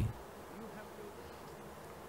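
Faint, steady background noise in a pause between spoken phrases, with no distinct event.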